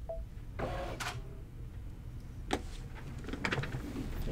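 Brother Luminaire 2 Innov-is XP2 embroidery machine: a short beep, then a brief mechanical whirr and a few clicks, over a low steady hum.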